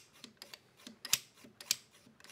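Bolt and charging handle of a freshly lubricated Ruger 10/22-pattern action worked back and forth by hand, giving a handful of light metallic clicks, the loudest a little past halfway.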